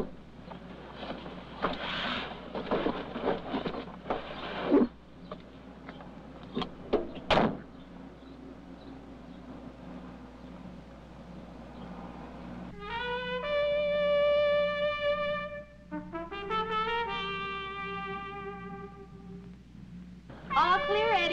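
Soundtrack music from an early-1960s film: two long, held brass notes, likely trumpet, the second sliding up into its pitch. In the first half there is a stretch of noise and a few sharp knocks.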